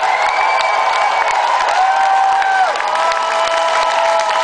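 Rock concert crowd cheering and screaming in a club, with several long high screams held for a second or two each over the roar.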